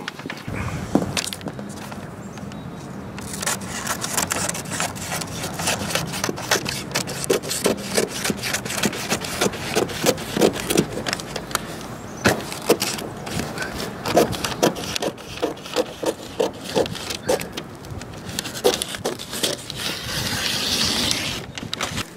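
Scissors cutting a craft-paper template: a long run of sharp snips with paper rustling.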